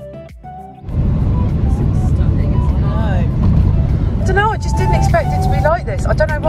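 Soft guitar music, then about a second in a sudden change to steady road and engine noise inside a moving vehicle's cabin at motorway speed.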